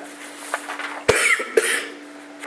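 Someone coughing twice, a little past a second in, over a steady low hum in the room.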